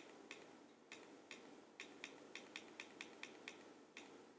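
Faint, sharp clicks of a handheld slide clicker's button, a dozen or so in quick succession at about three a second and speeding up, as slides are skipped forward one after another.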